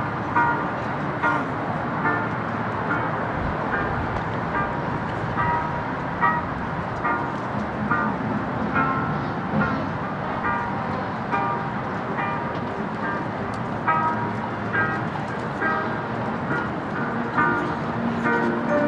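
Marching band warming up: scattered short instrument notes, a second or less apart, over a steady wash of open-air stadium background noise.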